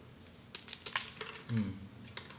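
Crisp ampiang, a fried rice cracker, snapped apart by hand: a quick run of brittle crackles from about half a second to just past one second, the sound of a very crunchy cracker.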